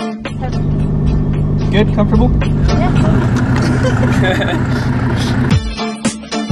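Engine of a 700-hp SRT Viper V10 running hard, its sound growing fuller about halfway through as it pulls, with a woman saying "yeah" and laughing; it cuts off abruptly shortly before the end.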